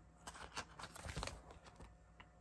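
Faint crinkling and rustling of a plastic binder sleeve page as baseball cards are slid out of its pocket, a run of small crackles that mostly falls in the first second and a half.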